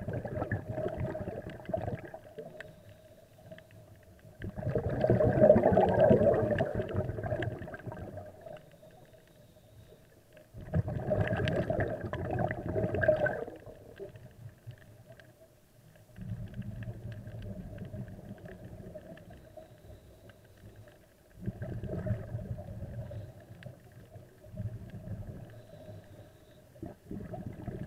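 Scuba diver breathing through a regulator, recorded underwater: loud bubbling rumbles of exhaled air come in a slow rhythm about every five to six seconds, with quieter spells between. A faint steady hum runs underneath.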